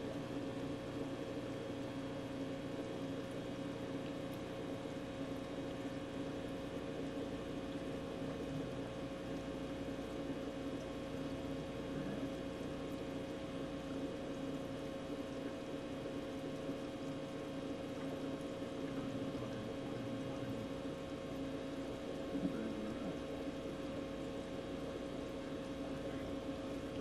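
A steady, unchanging machine hum with a constant low drone, like a running appliance, with one faint knock near the end.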